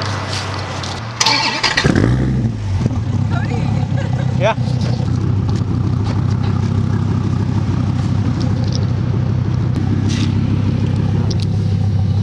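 Dodge Viper ACR's V10 engine starting: it fires with a short flare about two seconds in, then settles into a steady idle.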